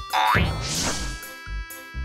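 Cartoon boing sound effect, a quick rising glide in pitch right at the start, over light background music with held tones.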